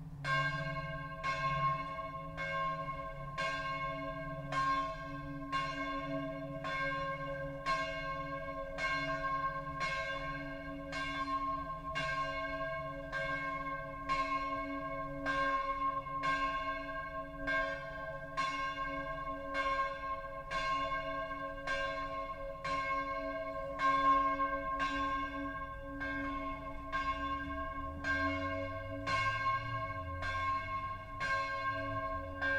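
A swinging bronze church bell, the sixth bell of a six-bell peal, rung alone. Its clapper strikes steadily, a little more than once a second, and each stroke rings with a cluster of bright overtones. The ringing begins right at the start.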